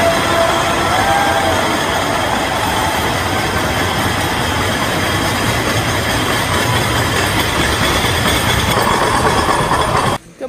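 A large crowd in a hall yelling and cheering all at once, a loud, steady din of many voices.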